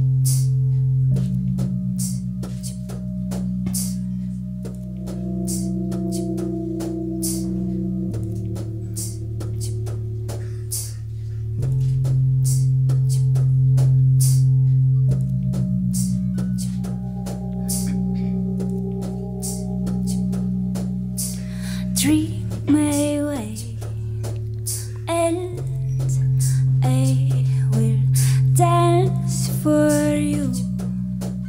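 Live band music: sustained low keyboard chords that change every few seconds over a steady ticking drum beat. A singing voice comes in near the end.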